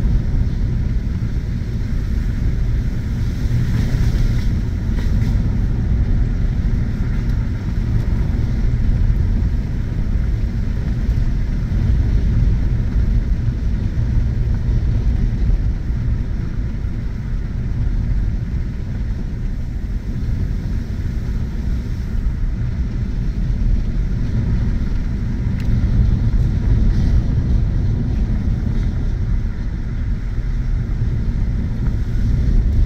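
Ford F-150 pickup driving along a dirt road, heard from inside the cab: a steady low rumble of engine and tyres.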